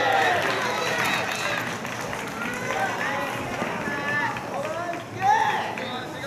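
Several voices calling out and shouting across an open ballfield, overlapping without pause, with one louder shout about five seconds in.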